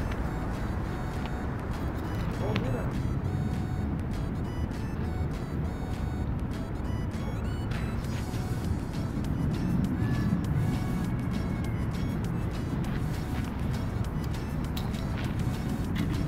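Steady low rumble of road traffic, with faint voices.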